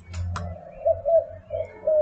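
A bird cooing: a low, steady note with a few short swells. A short click comes about a third of a second in.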